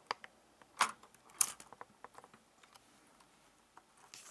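Light plastic clicks and taps of LEGO pieces being handled as the crane hook and the mini quad are fitted together, with two louder clacks about one and one and a half seconds in.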